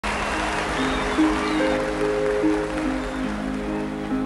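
Studio audience applause dying away over the first three seconds or so, over the slow instrumental introduction of a ballad with long held notes.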